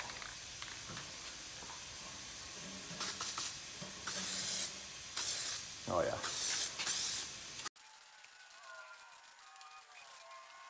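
Aerosol spray-paint can spraying gray paint onto an alloy wheel in about five short hissing bursts, a second coat going on. The hiss stops abruptly about three-quarters of the way through.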